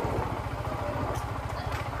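Motorcycle engine running at low speed with an even, low throb of firing pulses, under a haze of road noise.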